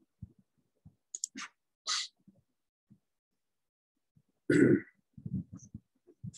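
A few faint mouse clicks, then about four and a half seconds in a louder short throat noise from the man at the computer, followed by faint low mumbling.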